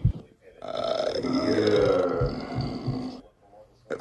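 A man's long, drawn-out burp of about two and a half seconds, wavering in pitch.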